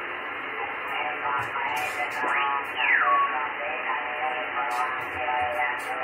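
Amateur radio receiver audio from the RS-44 satellite's single-sideband downlink: steady narrow-band hiss with weak, garbled sideband voices underneath. About two seconds in, a whistle sweeps steeply up, then slides back down and holds briefly as a steady tone.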